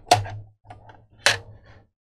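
Two sharp clicks, a little over a second apart, as the Raspberry Pi 400's cover comes loose from its red plastic case while being pried and lifted by hand.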